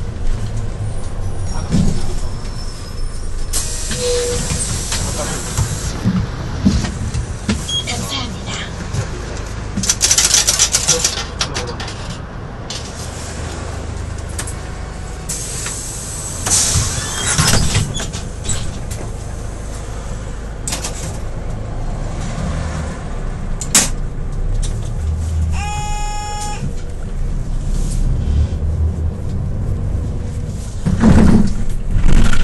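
Cabin sound of a Hyundai New Super Aerocity city bus: a steady low rumble from the running engine and road, with several loud bursts of air hiss as it pulls in to a stop. Near the end comes a single plain electronic beep lasting about a second, the older bus's stop-request bell, which gives a plain beep rather than a ding-dong.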